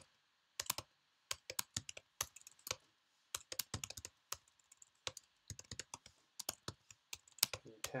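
Typing on a computer keyboard: irregular key clicks in quick runs of several a second, beginning after a short pause.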